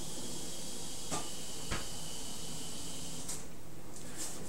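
Steady hiss of background noise with a faint high tone that stops after about three seconds, and two light clicks, about a second in and just under two seconds in, from a handheld camera being moved about.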